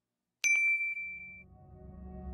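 A single bright bell ding from a notification-bell sound effect, struck about half a second in and ringing out over about a second. Soft ambient music fades in underneath near the end.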